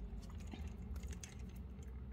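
Faint, scattered light clicks of a steel beading needle and small glass seed beads being handled and stitched, over a low steady hum.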